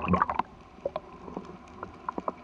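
Sea water splashing and gurgling around the camera housing as it dips below the surface, fading within the first half second into a muffled underwater hush with a few faint scattered clicks.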